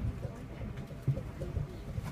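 Low rumble with irregular knocks inside a Tama Toshi Monorail car running along its guideway.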